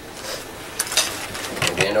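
A few light clicks and knocks of a hard plastic 3D-printed foot being handled and fitted onto the corner of a 3D printer's frame.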